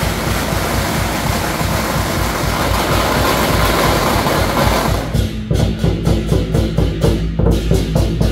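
A continuous string of firecrackers crackling densely over procession percussion for about five seconds. Then the firecrackers stop and a steady drum beat of about three strikes a second carries on.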